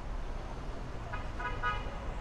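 A car horn sounding a few quick short toots about a second in, over a steady low rumble of street traffic.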